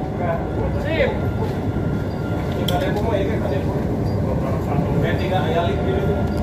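Interior running noise of the Kalayang airport skytrain, a driverless rubber-tyred people mover, travelling along its elevated concrete guideway: a steady low rumble with a faint high whine above it, and muffled voices now and then.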